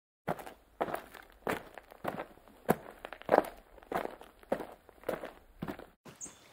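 Footsteps of a person walking at a steady pace, about three steps every two seconds, each step a short sharp impact.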